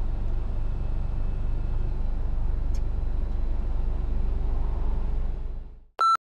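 Car cabin noise while driving: a steady low engine and tyre rumble that fades out about half a second before the end.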